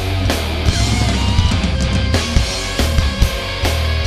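Heavy metal band playing live: distorted electric guitars over bass and drums, with frequent drum and cymbal hits.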